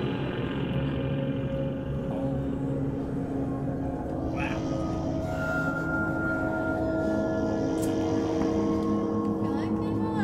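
Ambient game-soundtrack music: layered, sustained drone tones that hold steady and shift slowly, with a gong-like, singing-bowl quality.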